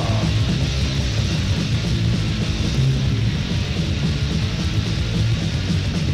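Loud, fast punk recording from a vinyl LP: distorted electric guitars, bass and drums playing steadily, with no vocals in this stretch.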